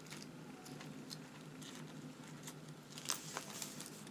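Faint rustling and a scatter of light clicks as a handmade paper mini album is handled and its closure undone to open it, over a steady low hum.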